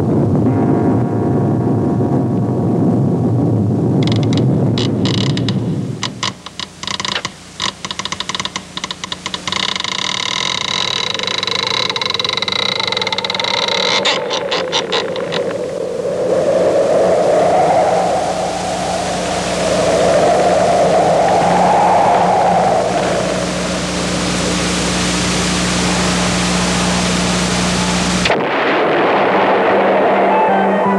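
Spooky sound-effects track for a vampire scene. A low noisy rumble comes first, then about six seconds of rapid clicking and squealing. A wavering wail follows, rising and falling twice over a steady low hum, and everything cuts off suddenly near the end.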